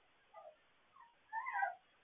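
Puppy whimpering: three short, high whines, the last the longest and loudest, rising then falling in pitch.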